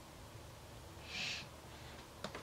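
A short breathy exhale, a soft hiss of about half a second just after one second in, over faint room tone.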